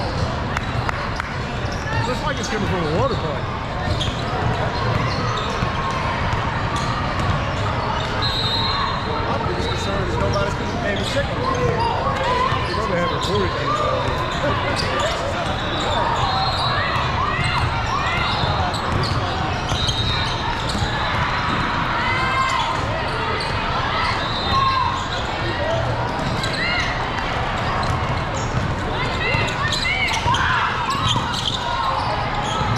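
Basketball game in a large echoing hall: a ball bouncing on the court, sneakers squeaking in short chirps, and a steady background of players' and spectators' voices.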